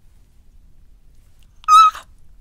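A woman's short, loud, high-pitched squeal of excitement near the end, held on one pitch.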